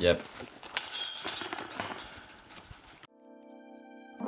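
Footsteps and rustling on a dry leaf-littered forest floor with light jingling. About three seconds in, the sound cuts abruptly to soft piano music.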